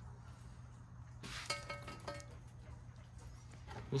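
Quiet workshop room tone: a steady low electrical hum, with a brief faint clink of metal handled on the bench about a second in that rings on briefly.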